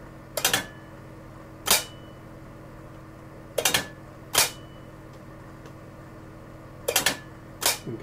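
Corsa marine exhaust diverter solenoids clacking the butterfly valves over as the trigger wire is powered, three times: each time a short, ragged cluster of clacks and then a single sharp clack under a second later. The starboard valve is slow to respond, which the owner suspects is down to a bad solenoid or drag in the valve.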